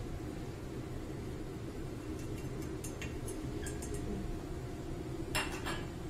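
Utensils clinking and scraping against a stainless steel mixing bowl and a small steel pot as sauce is scraped in and mixed into mung bean noodles: a few light clinks, then a short burst of louder clinks near the end, over a steady low room hum.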